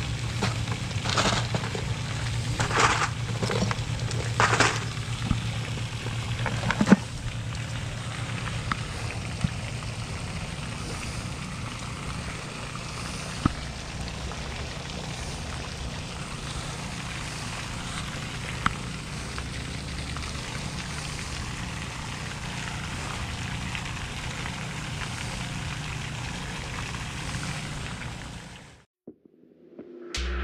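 Steady low rumble of wind buffeting a body-worn camera's microphone, with rustling and a few sharp clicks from handling gear in the first seven seconds. It cuts off just before the end.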